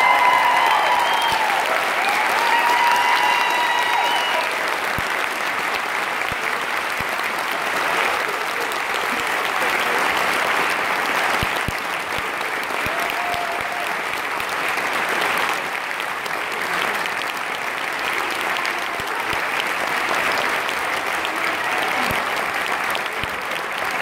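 Audience applauding steadily at the end of a live acoustic song, with a few raised voices in the first few seconds.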